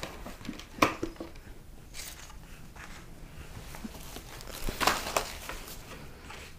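Cardboard box and packaging handled by hand: scattered knocks, scrapes and rustles. The sharpest knock comes about a second in, and a cluster follows near the end.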